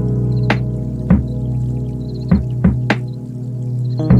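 Background instrumental music: sustained low notes held under a handful of short, sharp struck notes.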